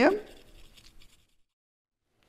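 A Brazil nut grated on a fine hand grater: a faint, dry scratching that stops about a second in.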